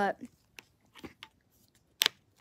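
A pair of magnetic rechargeable hand warmers being handled: a few light clicks and taps, then a sharp, loud click near the end.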